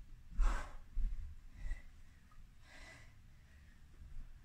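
A person breathing hard during floor exercise: one forceful breath about half a second in, then two fainter breaths, with a few soft low thumps.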